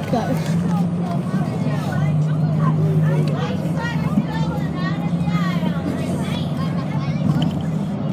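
Bus engine droning steadily in the cabin, a low hum under the chatter of children talking around it.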